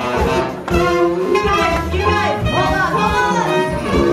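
Live hot-jazz band playing, with a bowed fiddle line over banjo, drums and horns.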